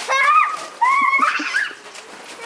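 Young children squealing with excitement: two long, high-pitched squeals, the second rising and falling.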